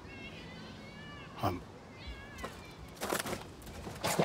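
Several short, high, arching animal calls in the background, with a man's voice speaking briefly in between.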